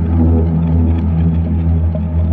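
Deep electronic music: a sustained synthesizer bass drone with layered held tones above it, and no beat in this stretch.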